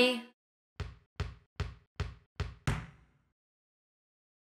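Six quick knocks, evenly spaced about two and a half a second, with the last one the loudest: a cartoon knocking sound effect. Just before them, the end of a children's song fades out.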